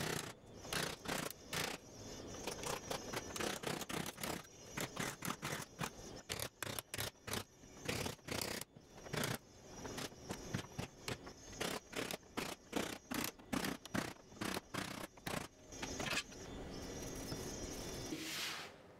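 Hand hammer striking the aluminium (Birmabright) body panels of a Land Rover Series 2a: panel beating out dents, a long run of sharp metallic knocks, several a second with short pauses, then a few seconds of steadier noise near the end.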